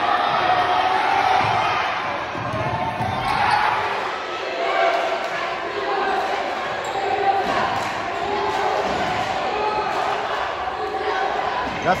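A basketball game in a gym: a ball dribbling on the hardwood over steady crowd chatter.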